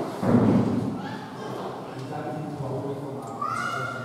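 Voices talking in a hall, with a loud thump about half a second in, and a high voice rising near the end.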